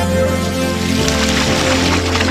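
Background music, joined about a second in by a rush of water gushing out of the DIY ram pump where a pipe fitting has been opened.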